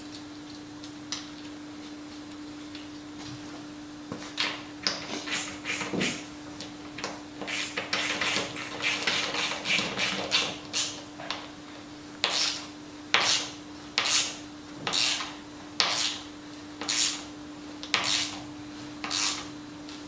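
Bolt being tightened through a wooden rubbing strake into a boat hull: a run of short rasping strokes, irregular at first, then about one a second for the last eight seconds. A steady low hum sits underneath.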